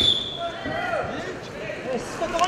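A referee's whistle blows once, a short steady high-pitched blast at the start, stopping the ground wrestling so the wrestlers stand back up. Voices in the arena follow.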